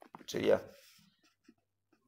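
A man's voice, one short spoken word about half a second in, then quiet with a faint tap near the end.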